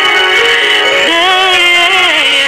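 A woman singing a slow pop ballad live with instrumental accompaniment, her voice sliding up about a second in to a long held note with vibrato.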